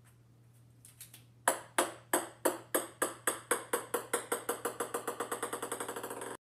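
A small ball bouncing on a hard wooden floor: from about a second and a half in, the bounces come quicker and quieter until they run together into a rapid rattle as it comes to rest. A faint steady low hum runs underneath.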